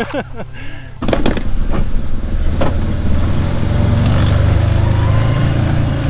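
A vehicle engine running as it drives, a steady low rumble that starts suddenly about a second in with a few sharp knocks and grows louder toward the end.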